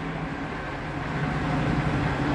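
Ice resurfacing machine running as it drives onto the ice, a steady low motor hum that grows gradually louder as it approaches.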